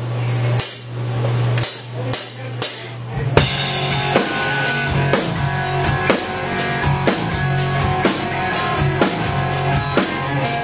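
Live rock band with drum kit, electric guitars and bass starting a song: a held low note with cymbal strokes, then the full band comes in with a steady drum beat about three seconds in.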